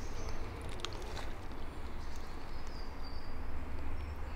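Quiet river water swirling around hands holding a chub in the current for release, over a low rumble. A couple of faint clicks about a second in and a faint high whistle near the end.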